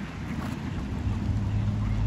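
Low rumble of wind on the microphone outdoors, with a steady low hum coming in about a second in.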